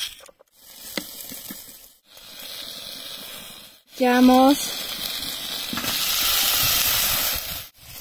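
Sliced onion, carrot and tomato sizzling in hot oil in a frying pan. The steady hiss grows louder in the second half and cuts off suddenly just before the end.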